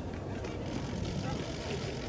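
Steady low rumble of outdoor ambient noise with faint, indistinct voices in it.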